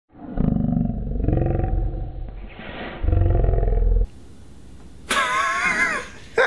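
A deep, rumbling roar in a muffled, low-fidelity recording, which cuts off abruptly about four seconds in. About a second later comes a high, wavering voice.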